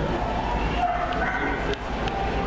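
A dog yipping and whimpering in a few short, high calls, over the steady hum and chatter of a pet store.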